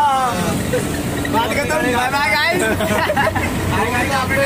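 A group of young men's voices laughing and calling out together inside a moving bus, over the steady low rumble of the bus engine.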